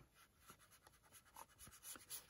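Near silence with a few faint, brief scuffs of a paintbrush on watercolour paper as wet paint is laid on, most of them in the second half.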